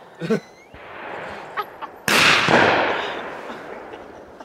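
A distant gunshot about two seconds in, sharp at the start and rolling away over a second or two.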